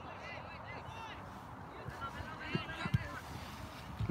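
Distant shouts and calls from players across an open soccer field, over steady outdoor air noise. There are two short thuds about two and a half and three seconds in.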